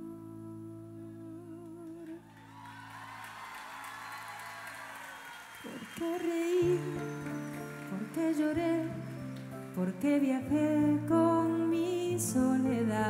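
A woman singing a slow, gentle song live with keyboard accompaniment: a held, wavering note at the start, a few seconds of soft accompaniment alone, then the voice coming back in about six seconds in.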